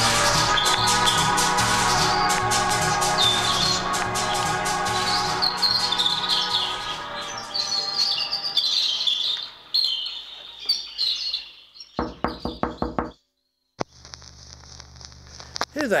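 Music fading out under birdsong chirps, then a quick run of knocks on a front door about twelve seconds in, followed by low room hum.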